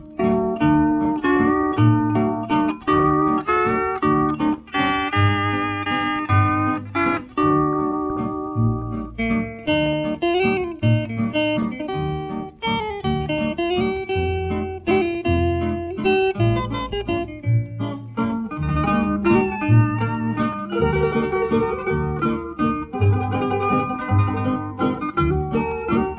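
Instrumental break of a 1950 country duet record: a string band with guitar plays between the sung verses. Lead notes slide and waver over a steady beat in the low notes.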